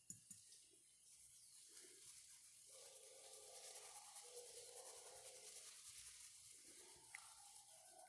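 Faint scratchy rubbing of a paintbrush worked over cloth, starting about a second in and fading just before the end, with a few small ticks at the very start.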